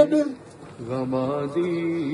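A man's voice drawing out long, held syllables in a chant-like way. It dips almost to nothing for a moment about half a second in, then carries on with a steady held note.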